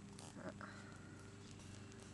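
A puppy gives one short, faint high whine about half a second in. A few small clicks are heard over a quiet background hum.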